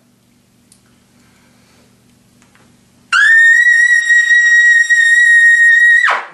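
Trumpet with a Bach 1.5C mouthpiece playing a loud double C. The note comes in about halfway through with a slight scoop up into the pitch, is held steady for about three seconds, and then cuts off.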